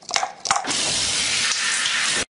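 A couple of sharp clicks, then shower water spraying steadily, cutting off suddenly just after the end.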